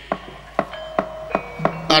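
Sparse single notes from the gamelan ensemble accompanying a Sundanese wayang golek show: about five separate notes over two seconds, each with a sharp attack and a short ringing tone.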